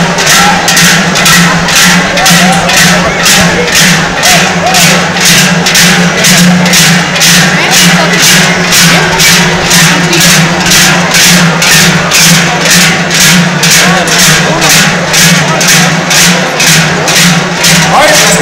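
Joaldun dancers' large cowbells (joareak) strapped to their backs clanging together in unison, a regular beat about twice a second as they step in time, over the chatter of a crowd.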